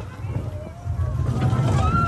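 Launched roller coaster train running along its track, with wind buffeting the microphone and a low rumble that grows louder about a second in. Riders' voices call out over it in drawn-out, gliding cries.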